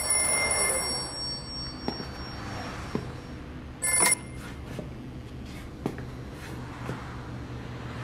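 Wall payphone bell ringing: the end of one ring fades out at the start, and a short ring comes about four seconds in, with a few soft knocks between.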